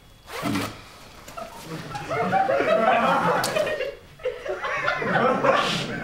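A jacket zipper pulled open about half a second in, followed by several seconds of people laughing.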